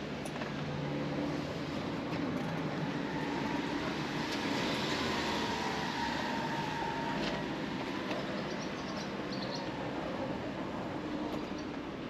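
A train running past on the JR Nara Line. Its rumble rises to a peak around the middle and then eases off.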